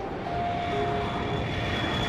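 A twin-engine jet airliner flying overhead, a steady rushing engine noise that grows louder, with a few held tones over it.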